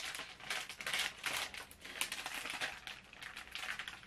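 Clear plastic packaging crinkling and rustling unevenly in a string of small crackles as a lanyard is handled and pushed back into it.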